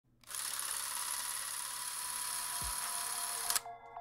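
Steady mechanical whirring hiss, high in pitch with a faint steady tone in it, that cuts off with a few clicks about three and a half seconds in; a short low thump partway through.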